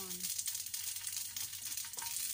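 Chopped onion sizzling in hot oil in a frying pan, a steady high hiss.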